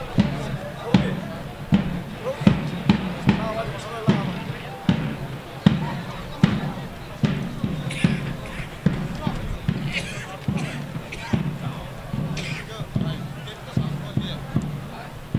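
A steady beat of low thumps, about one every 0.8 seconds, with voices underneath.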